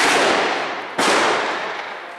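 Two loud gunshots about a second apart, each followed by a long echoing tail.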